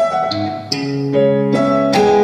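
Studiologic stage keyboard playing sustained piano chords, with new chords struck about two-thirds of a second in and again near the end.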